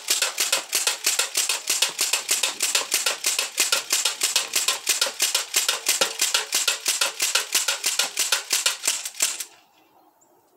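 Sig Sauer MPX ASP CO2 air rifle firing pellets semi-automatically in a fast string of sharp shots, several a second, powered by a 12-gram CO2 adapter. The firing stops about nine and a half seconds in.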